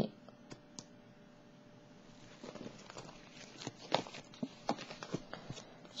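Tarot cards being handled on a wooden tabletop while a clarifying card is drawn: a scattered run of soft clicks and brief card rustles in the second half.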